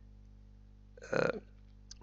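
A man's single short voiced sound, under half a second long, about a second in, over a low steady electrical hum.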